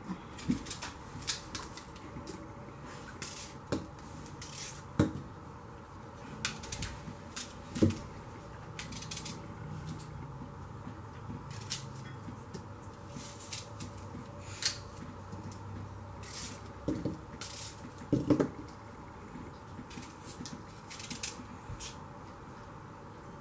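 Paring knife cutting the cores out of green apple quarters held in the hand, with scattered small clicks and taps and a few louder knocks as the knife and apple pieces meet the plastic cutting board.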